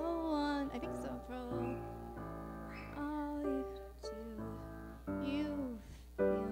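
Grand piano playing slow chords that change about once a second, with a voice singing a gliding melody over them near the start and again about five seconds in.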